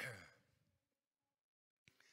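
A man's voiced sigh, falling in pitch, in the first half-second, then near silence. Near the end comes a short click and a soft breath in before he speaks.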